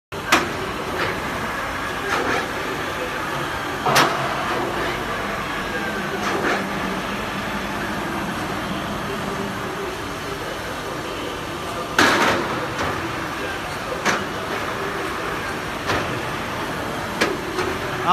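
Metal clunks from the control levers of a heavy-duty engine lathe as they are shifted by hand, about eight sharp knocks spread out, the loudest about twelve seconds in, over a steady machine hum.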